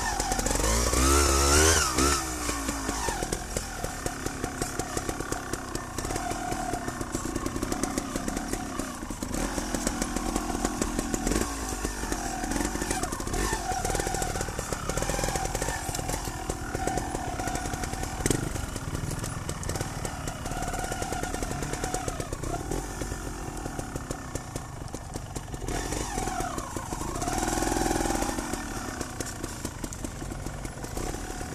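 Trials motorcycle engine running at low, varying revs as the bike is ridden, with a sharp rise in revs about a second in and another near the end. A single knock is heard about midway.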